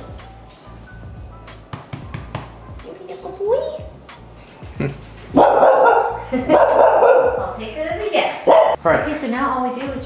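Small dog whining and barking excitedly while it is petted and greeted. A rising whine comes about three seconds in, followed a little past halfway by a run of loud, rough barks.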